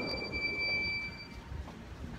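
One steady, high-pitched electronic beep held for about a second and a half, cutting off suddenly, over low background noise.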